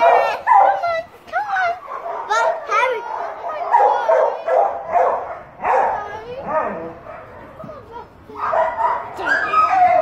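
A dog yipping and whimpering in short, high cries that rise and fall, one after another, with a quieter lull around seven seconds in.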